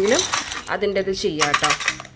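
Small plastic fish of a toy fishing game clicking and clattering against the plastic board as they are picked up and set into its holes: several light, sharp clacks.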